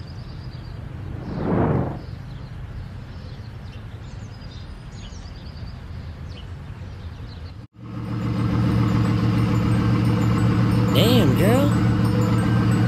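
Street ambience with birds chirping and a car driving past about a second and a half in. After a brief dropout near the eight-second mark, a rap beat with a heavy bass starts.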